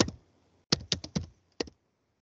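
Computer keyboard keys typed in short quick strokes: one keystroke at the start, a fast run of about five a little before a second in, and one more past one and a half seconds, as a search term is typed.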